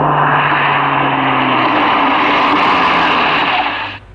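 Car engine running steadily, then switched off abruptly near the end.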